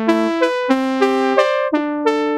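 Prophanity software synthesizer, an emulation of the Sequential Circuits Prophet-5, playing a phrase of bright, sustained notes that overlap, a new pitch coming in about every half second.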